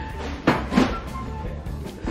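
A leather handbag being handled, with a brief rustle and knock about half a second in, over quiet background music.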